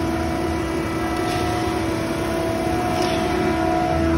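Concrete mixer truck running wound up at high idle with its drum spinning fast: a steady hum with a constant whine. Water is being let into the drum to raise the slump of the load.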